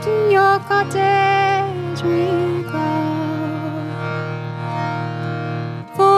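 Traditional English folk song: a woman sings long, held notes over a steady low drone accompaniment.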